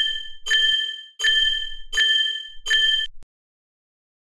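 Cartoon sound effect of a bell-like electronic ding, repeated five times at an even pace about three-quarters of a second apart, as the hypnotizing machine is switched on.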